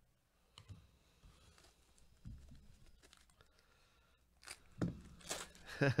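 Trading cards being handled by gloved hands. Faint card-on-card rustling gives way in the last second and a half to louder crinkling and tearing of a foil card-pack wrapper, ending with a brief laugh.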